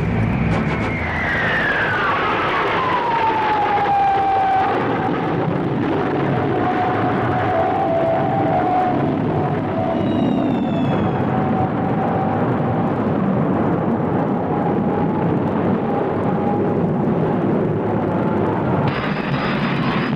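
Jet aircraft engine noise: a whine that glides down in pitch over the first few seconds, then holds steady over a continuous rumble.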